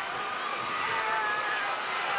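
Live basketball game sound in an arena: steady crowd noise, with the ball bouncing on the hardwood court.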